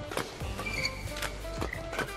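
Badminton rackets striking a shuttlecock in a fast doubles rally: a quick run of sharp hits a few tenths of a second apart, over steady background music.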